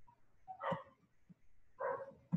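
A dog barking faintly: two short barks about a second apart.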